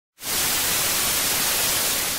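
Television static sound effect: a steady hiss of white noise that starts a moment in.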